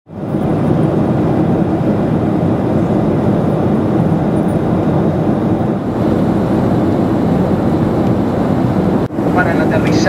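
Steady cabin noise of a jet airliner in flight, heard from inside the passenger cabin. In the last second a cabin announcement starts over it.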